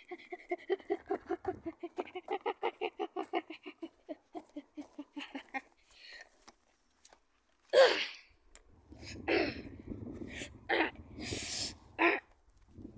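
A voice giving a rapid run of repeated wordless syllables, about five a second, for roughly the first five seconds. After a pause comes a sudden loud knock, then rustling and handling noise as a plush toy is pushed in among twigs and branches.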